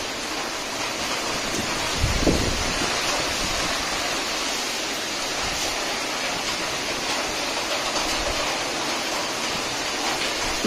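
Steady rain falling on garden foliage, an even hiss throughout, with a brief low thump about two seconds in.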